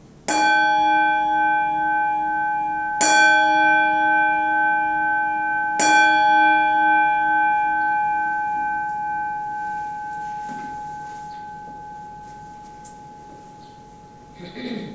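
A bell struck three times, a few seconds apart, each ring sustained and slowly dying away. It is the consecration bell marking the elevation of the chalice at Mass.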